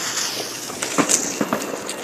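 A freshly lit firework fuse hissing as it burns and throws sparks, with a few sharp clicks about a second in.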